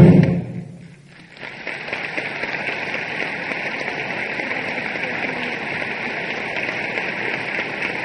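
A concert band's final chord ends on a loud percussion stroke that rings away within about a second. After a brief hush, audience applause starts and goes on steadily.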